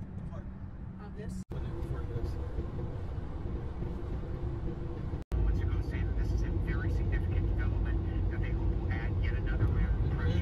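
Steady road and engine rumble inside a car's cabin at highway speed, with faint, indistinct voices talking. The sound drops out for an instant twice, and is louder after the second break.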